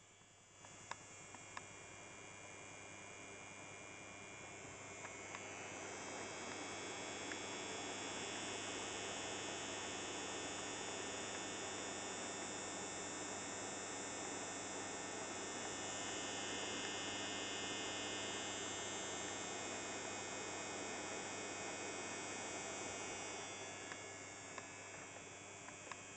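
Large centrifugal air rotor fan starting on restricted power from a soft-start unit, with a heater in series holding it back. It spins up slowly over about eight seconds to a steady rush of air with a low electrical hum.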